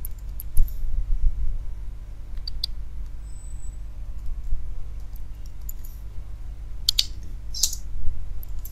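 Computer keyboard being typed on in scattered keystrokes, with two louder clicks near the end, over a steady low rumble.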